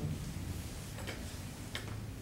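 Marker pen writing on a whiteboard: three short, faint scratchy strokes over a low steady room hum.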